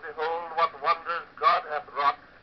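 A man giving a formal speech, heard on an 1890s acoustic cylinder recording.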